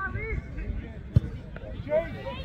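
Distant shouting of players and spectators across an open pitch, with a single sharp thump a little over a second in.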